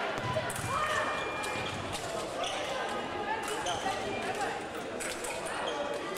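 Sabre fencing footwork and blade contact: shoes stamp on the piste and sabre blades clash in sharp scattered clicks, with voices echoing in a large hall.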